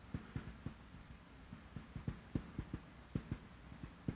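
Marker pen tapping and knocking on a whiteboard as characters are written: a string of soft, irregular low taps, a few each second.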